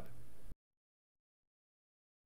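Steady background hiss of the voice recording that cuts off abruptly about half a second in, followed by dead digital silence.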